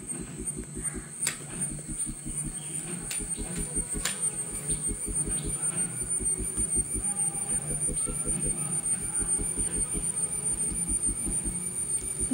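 Metal spoon stirring flour in a glass bowl, clinking sharply against the glass twice in the first few seconds, over a steady low pulsing at about five beats a second that grows slightly louder.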